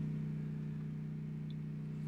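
Room tone: a steady low hum with nothing else happening.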